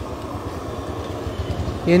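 Steady low rumble with a light hiss over it: a street-stall gas burner running under a pan of eggs frying in butter.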